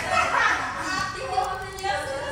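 A girl's voice talking, with no other sound standing out.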